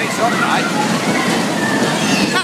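Voices talking over a steady rushing noise.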